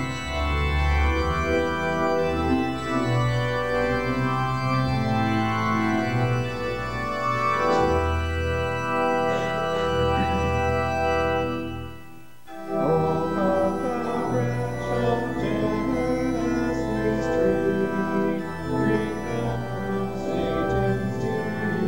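Organ playing a hymn tune in sustained chords, with a short break about twelve seconds in before the next phrase begins.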